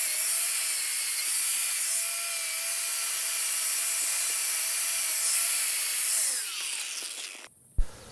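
Wire wheel on an electric angle grinder running against a forged rebar cross: a steady high motor whine over a scratchy hiss. About six seconds in the grinder is switched off and the whine falls in pitch as it spins down.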